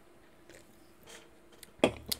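Quiet indoor room tone with a faint steady hum and a few soft ticks, then a single sharp click near the end.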